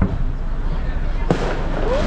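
Fireworks exploding: a sharp bang a little past halfway, with a noisy tail that trails off after it, over the talk of a watching crowd.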